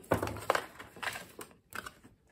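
Paper scraps and small washi tape rolls tipped out of a paperboard box onto a wooden desk: a few light knocks and paper rustling, the loudest about half a second in, dying away in the last half second.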